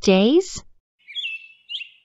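The tail of a spoken English sentence, then short high bird-like chirping with small pitch steps, starting about a second in.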